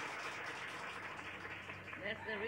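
A small group of people applauding, a steady, fairly faint clapping.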